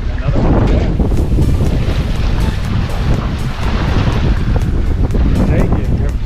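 Wind buffeting the microphone on a small boat at sea, with the sea washing around the hull; a steady, loud rushing with a heavy low rumble.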